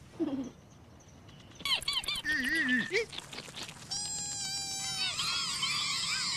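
High-pitched squeaky little voices of cartoon bugs, a short falling squeak and then chittering calls and a held squeal. About five seconds in they become a chorus of many overlapping chirping voices cheering.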